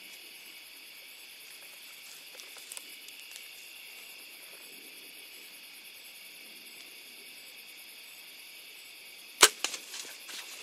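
Bowtech Diamond Razor's Edge compound bow firing: after a quiet hold at full draw, one loud sharp snap of the string as the arrow is released near the end, followed by a smaller second crack a quarter second later.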